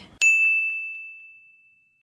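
A single ding: a bright, bell-like tone struck once about a fifth of a second in, then ringing on at one pitch and fading away slowly. It is an added sound effect.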